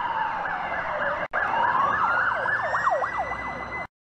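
A siren-like wailing sound: one long falling tone, then a brief break about a second in, then a rising tone with a fast warble over it. It cuts off abruptly just before the end.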